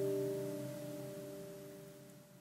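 Acoustic guitar's last strummed chord ringing out and slowly fading away at the end of the song.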